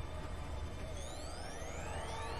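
Sci-fi action soundtrack: a steady low rumble with several rising whines starting about a second in.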